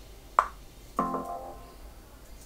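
A sharp click a little under half a second in, then a chord played on a software keyboard instrument in Logic Pro X about a second in, ringing on and fading.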